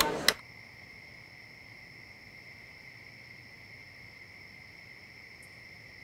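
Bar chatter cuts off with a sharp click just after the start, leaving a faint, steady high-pitched tone, two pitches held without a break.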